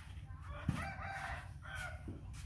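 A rooster crowing once, starting about half a second in and lasting over a second.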